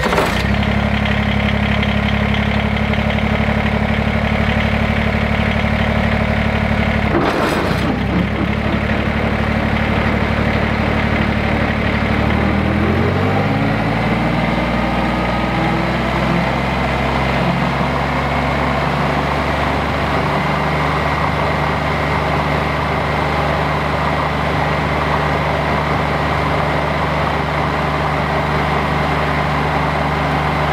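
Kubota BX23S subcompact tractor's three-cylinder diesel engine running steadily, with a brief clunk about seven seconds in. From about twelve to sixteen seconds in, the engine speed rises smoothly, as the throttle is brought up for brush-cutter PTO work, and it then holds at the higher speed.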